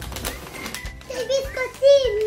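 Plastic food packaging rustling and crinkling as a hand rummages through a wooden gift crate, followed about a second in by a child's short high voice sounds.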